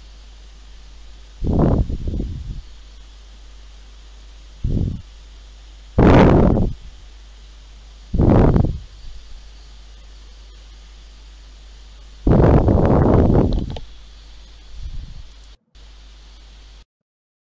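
Six irregular bursts of rustling noise close to the microphone, each lasting half a second to a second and a half, the longest about three-quarters of the way through, over a faint steady low hum.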